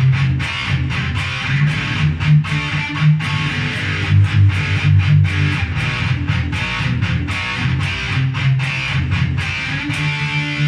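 Yamaha electric guitar played continuously with a solid titanium pick: a busy stream of quickly picked notes.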